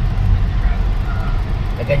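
Steady low engine and road rumble heard from inside the cabin of a vehicle driving slowly.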